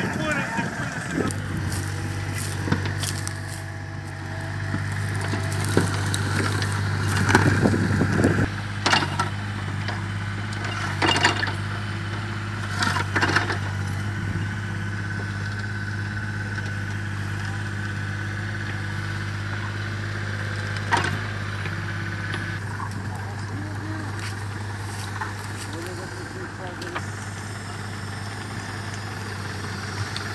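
Tractor diesel engine idling steadily, with a few sharp knocks and clatters over it in the first half.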